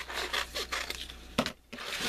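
Sheets of drawing paper rustling and scraping as they are handled on a cutting mat, with a sharp tap about one and a half seconds in and a brief lull after it.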